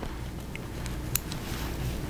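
Low steady hum with a single faint click about a second in.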